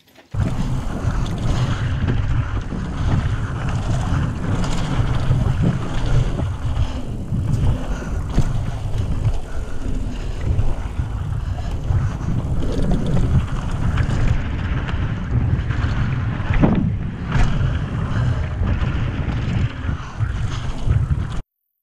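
Wind buffeting an action camera's microphone on a fast mountain-bike descent down a dirt trail, a loud continuous low rumble. Over it come frequent sharp knocks and rattles from the bike going over bumps.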